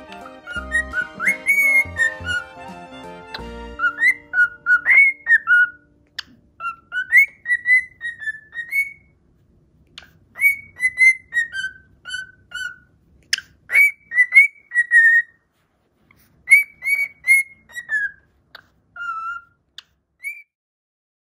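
Male cockatiel whistling a tune in short phrases of clear, sliding notes, with pauses between phrases. Background music plays under the first few seconds and stops about three and a half seconds in.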